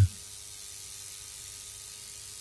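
A pause between spoken words, filled only by a steady, faint background hiss from the recording.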